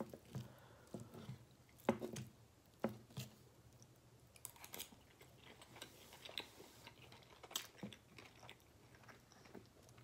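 Quiet, close-up chewing of a mouthful of baked pasta, with soft wet mouth sounds and scattered sharp clicks.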